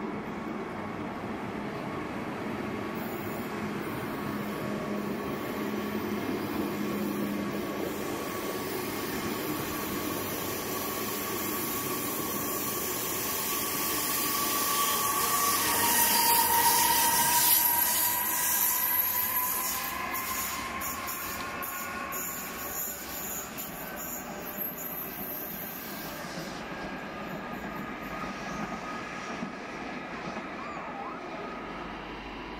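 Intercity 2 double-deck train with a Bombardier TRAXX electric locomotive moving past along the platform: a steady rumble of wheels on rail with a high whine that slides in pitch. It grows loudest about sixteen to eighteen seconds in, as the locomotive goes by close at hand, then fades.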